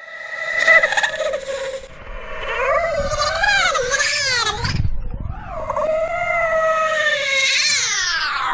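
Three long, high-pitched, wavering yowls like a cat's or a wailing baby's, the cries of a monster. The pitch swoops up and down, most wildly in the middle cry, and the last cry is the longest.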